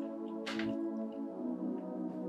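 Soft, sustained ambient background music, with one brief noisy sound from the meal about half a second in.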